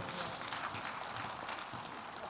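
Scattered applause from a church congregation, fading away.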